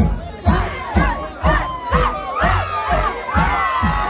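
A concert crowd cheering and shouting, many voices overlapping, over loud music with a steady kick drum beat about twice a second.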